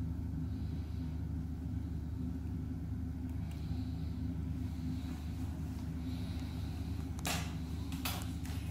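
Steady low mechanical hum in a small room, with a brief sharp rustle or knock near the end.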